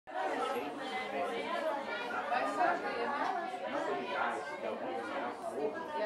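Several people's voices speaking at once, overlapping so that no single voice stands out.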